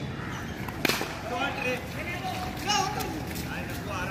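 A cricket bat strikes a tennis ball once with a sharp crack just under a second in, followed by players shouting.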